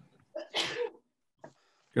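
A person sneezing once, a short sharp sneeze about half a second in.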